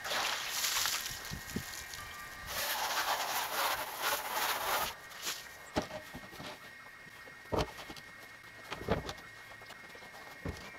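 Water from a garden hose spraying into a tipped plastic rain barrel and splashing out as it is rinsed, in two spells over the first five seconds. Then a few sharp knocks as a barrel is moved and set back in place.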